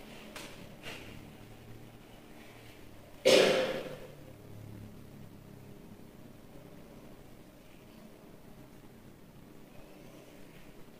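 A single sudden breathy noise from a person, about three seconds in, dying away within half a second, over quiet room tone.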